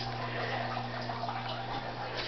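Water trickling and dripping in a deep-water hydroponic system, over a steady low electrical hum.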